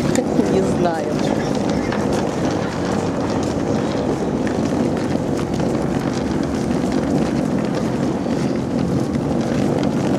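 Steady rumble of wheeled suitcases rolling over concrete pavement, with voices in the background.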